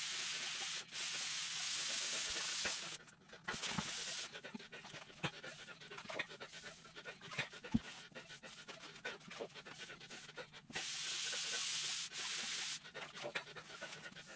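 A man breathing heavily while working on his knees, long hissing breaths in pairs near the start and again about eleven seconds in. Between the breaths, light scrapes and small knocks of a sponge being worked over grouted tile.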